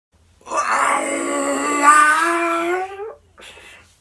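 A man's long, drawn-out wail of distress, lasting about two and a half seconds and rising in pitch at its end, acted out as a show of feeling overwhelmed. It is followed by a short, fainter breathy exhale.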